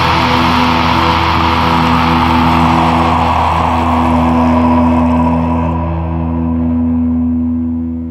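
The closing chord of a black/doom metal song: a distorted guitar chord held and left ringing under a noisy wash that slowly fades, the upper end thinning out about six seconds in. The sound drops away as the song ends.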